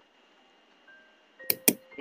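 Two sharp computer-mouse clicks, a fifth of a second apart, about a second and a half in, over faint steady background tones.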